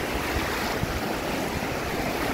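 Small waves breaking and washing around in shallow surf on a choppy sea: a steady rushing of water.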